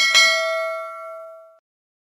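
Notification-bell 'ding' sound effect of a subscribe-button animation: a mouse click, then a bell struck once, several tones ringing together and fading away after about a second and a half.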